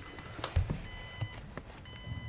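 Low-battery warning beeping, a high-pitched electronic tone repeating about once a second, each beep lasting about half a second. It signals that the 100Ah LiFePO4 battery is nearly drained after a day of powering the studio.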